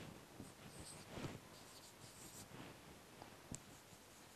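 Faint scratching and squeaking of a marker pen writing on a whiteboard, in short irregular strokes.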